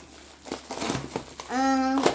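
Crinkling of the boxed toy monster truck's clear plastic packaging as it is handled, followed near the end by a child's drawn-out voice.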